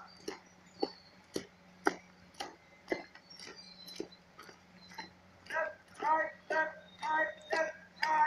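Cadets' marching footsteps on asphalt, a sharp step about every half second. About halfway through, short shouted calls join in, in time with the steps.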